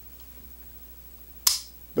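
A single sharp metallic click about one and a half seconds in: the hammer of a Kimber Stainless Pro Raptor II 1911 pistol falling as the trigger is dry-fired with the safety off. Otherwise only faint room tone.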